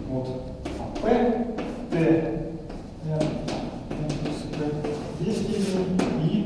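Speech: a lecturer talking in short phrases with brief pauses.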